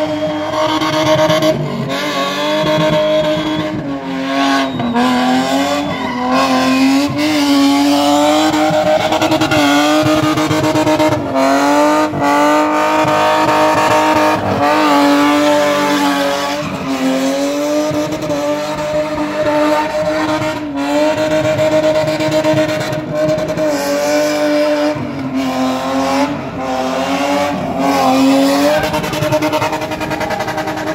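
BMW E30 3 Series coupé spinning: its engine held at high revs, the pitch wavering up and down as the throttle is worked, with several brief drops, over continuous tyre squeal from the spinning rear wheels.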